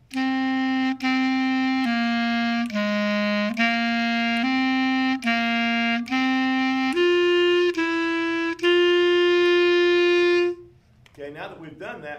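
A B-flat clarinet plays a slow phrase of eleven separate tongued notes in its low register. The lower notes step down and back up, then it moves up for the last three notes and holds the final note for about two seconds before stopping.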